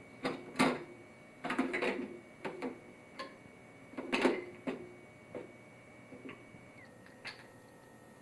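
Irregular plastic and wooden toy clicks and knocks, about a dozen, some in quick clusters, as a toddler handles a toy steering wheel and a pull toy with a wooden handle.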